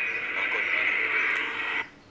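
A tinny, radio-like voice that cuts off suddenly near the end.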